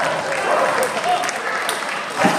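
Audience applauding, with voices in the crowd over the clapping.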